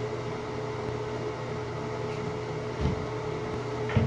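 Steady hum of a ventilation fan in a small tiled room, with a fixed low drone and a higher steady tone. Two short, dull knocks come about three seconds in and again near the end.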